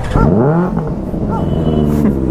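Benelli 600i inline-four motorcycle revved through its loud exhaust. The pitch climbs over the first half second, then holds at a steady higher rpm.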